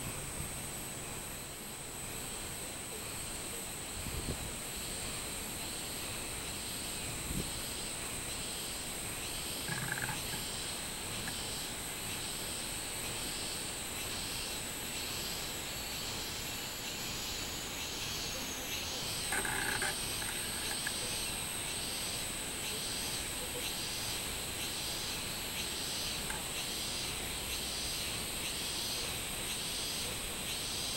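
Robust cicadas (minminzemi, Hyalessa maculaticollis) singing in the trees: a repeated pulsing 'meen-meen' song about once every 0.7 seconds, over a steady high-pitched insect drone.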